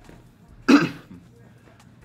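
A man clears his throat once, a short sharp burst about two-thirds of a second in.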